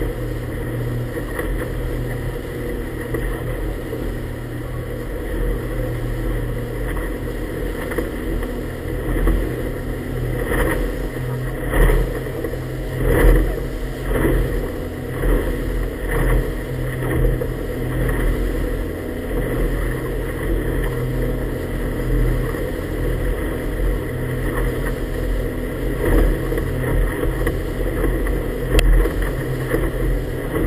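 Engine of a small inflatable motorboat running steadily underway, a constant low hum, with the hull knocking and slapping on the chop several times in quick succession about halfway through.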